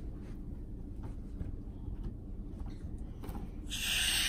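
Quiet handling of a stretchy transparent balloon ball, with faint rubbing and small clicks. Near the end a loud steady hiss of air starts at the balloon's inflating stick, as it is blown up further.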